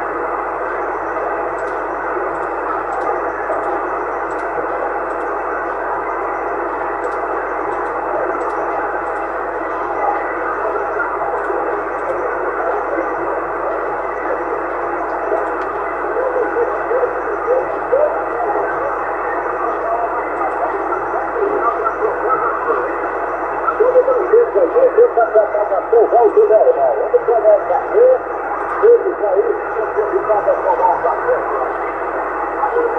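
Yaesu FT-450 transceiver's speaker hissing with receiver noise on 27.625 MHz upper sideband, the hiss held to a narrow voice band. Faint, garbled sideband voices begin to come through the noise about halfway in and grow stronger and choppier over the last several seconds.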